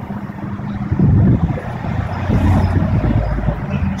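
Street traffic going past, a low rumble that swells about a second in and again around three seconds.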